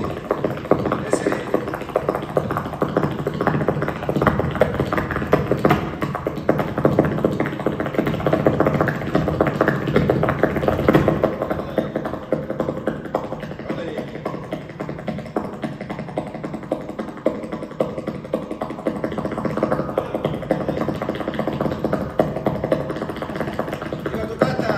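Flamenco dancer's shoes striking the stage in rapid zapateado footwork, a dense run of fast heel and toe taps, heaviest in the first half, over flamenco guitar accompaniment.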